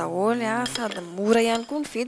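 A kitchen knife clicking and clinking against a wooden cutting board and dishes as vegetables are cut, in short sharp taps. A voice with long, wavering held notes runs over it and is louder.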